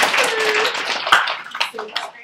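A small group applauding: a burst of dense clapping that thins to a few scattered claps near the end, with a voice calling out over it early on.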